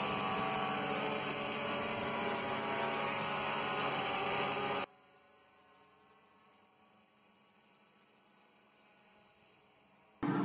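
Hexacopter's brushless motors and propellers running with a steady hum while lifting a 3 kg payload. The sound cuts off suddenly about five seconds in, leaving near silence.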